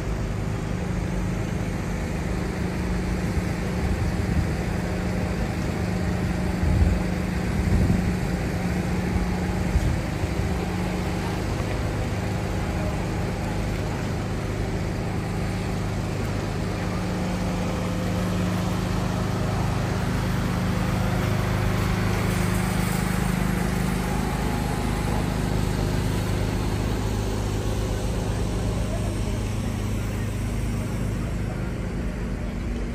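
City street ambience: a steady rumble of traffic with a low engine hum, background voices of passers-by, and a few low thumps about seven to ten seconds in.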